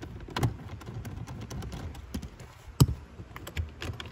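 A screwdriver with a T25 Torx bit backing a screw out of a plastic interior trim panel: a run of small irregular clicks and ticks, with one sharper click about three seconds in.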